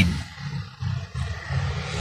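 Car engine idling, heard from inside the cabin as an uneven low rumble.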